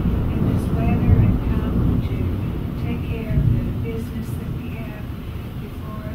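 A faint, distant voice speaking a prayer over a steady low rumble of room noise that slowly fades.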